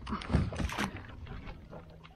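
A few knocks and bumps on the boat in the first second, then quieter handling knocks, with light water splashing from a hooked musky at the boatside as it is netted.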